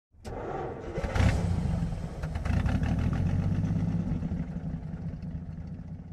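Car engine starting, with a rev about a second in, then running steadily and fading out near the end.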